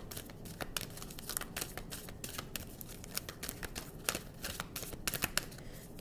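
A deck of oracle cards being shuffled by hand: a continuous run of quick, irregular card clicks and flutters, with a few sharper snaps about four and five seconds in.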